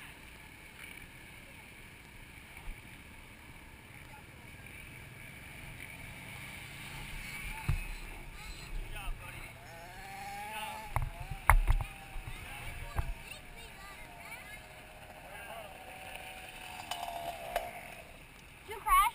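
Small dirt bike engines running in the background, rising and falling in pitch, with faint voices around them. Several low knocks on the camera come through loudest around the middle.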